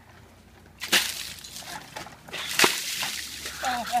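Buckets of ice water dumped over a seated person's head: a sudden splash about a second in, water splattering and sloshing, then a second loud splash a little before three seconds in.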